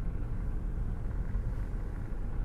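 Steady low rumble of car cabin noise, engine and road sound heard from inside the car.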